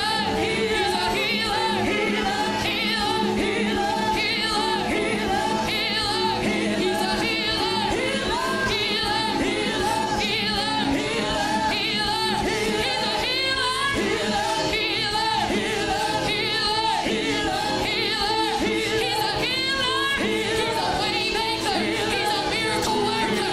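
Church worship music: several voices singing freely at once, wavering and overlapping, over steady held chords.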